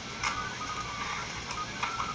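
Paper rustling in a few short crinkles as an envelope of plane tickets is handled and opened, over faint background music.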